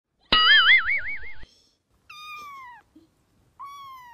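A cartoon 'boing' sound effect, its pitch wobbling up and down for about a second, is the loudest sound. It is followed by a cat meowing twice, each meow falling in pitch.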